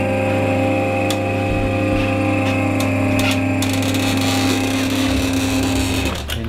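Electric motor of a chiropractic hi-lo tilt table running with a steady hum as the table tilts back to upright, stopping right at the end, with a few faint clicks over it.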